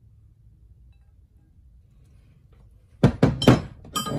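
Large steel combination wrenches clanking against each other on a wooden bench: a quick run of several sharp metal knocks about three seconds in, after faint room tone.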